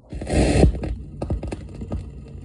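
Turntable stylus dropping onto a spinning 45 rpm vinyl single: a brief burst of noise as it lands in the lead-in groove, then scattered surface clicks and pops over a low hum before the music starts.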